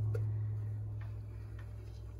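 A steady low electrical hum that slowly fades, with a few faint light clicks.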